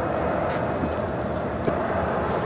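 A steady, low mechanical rumble of background machinery.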